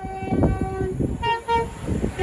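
Horn of an approaching Class 390 Pendolino electric train: a lower note held for nearly a second, then two short higher toots.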